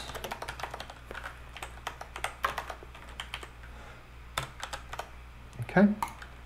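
Typing on a computer keyboard: a run of irregular, quick keystroke clicks as a line of code is typed.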